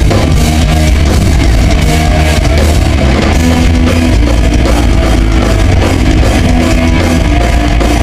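Thrash metal band playing live: distorted electric guitars and a drum kit, loud and continuous.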